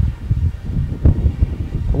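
Wind buffeting the microphone: an uneven low rumble that swells and drops in gusts.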